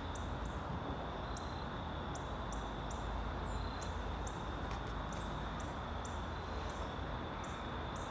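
Outdoor evening ambience: a steady high-pitched drone with short, high chirps from small creatures repeating about twice a second, over a low steady rumble.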